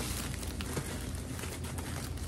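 Faint rustling of a plastic hot dog bun bag being handled and twisted open, over a steady low room hum.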